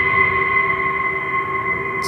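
Horror-style sound effect: a loud, steady eerie drone of high ringing tones over a low rumble.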